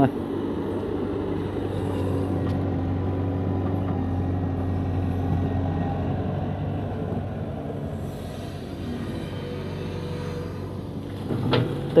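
Hitachi EX120-1 hydraulic excavator's diesel engine running steadily as it digs a ditch, a low hum with a few steady tones. It drops somewhat about two-thirds of the way through and comes back up near the end.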